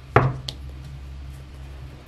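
A sharp knock, then a lighter click, as a tarot card deck is handled on the table, over a steady low hum.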